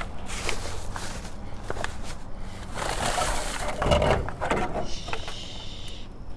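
Clear plastic produce bags crinkling and rustling, with scattered sharp clicks and knocks, as bagged fruit and vegetables are shifted about. It is busiest about halfway through.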